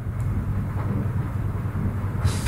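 Steady low hum of background noise, with no distinct events.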